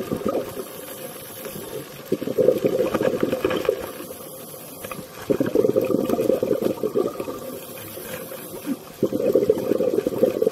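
Scuba diver's exhaled bubbles rushing out of the regulator, recorded underwater: three bubbling bursts of about two seconds each, a few seconds apart, with quieter stretches between as the diver breathes in.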